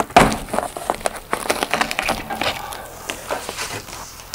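Corrugated cardboard box flaps being pulled back and handled: crackling and scraping of cardboard, loudest just after the start, then a run of smaller crackles and rubs.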